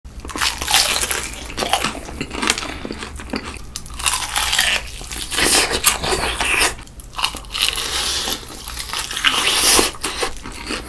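Crispy fried chicken crust crunching loudly as it is bitten and chewed close to the microphone, bite after bite, with louder crunchy spells about a second in, around four to six seconds, and near the end.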